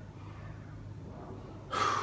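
A man takes one short, loud, sharp breath near the end, over a steady low hum in the room.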